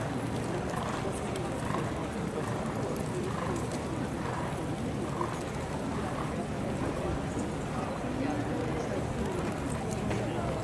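Racehorses walking in the paddock, their hoofbeats heard under a steady murmur of crowd voices.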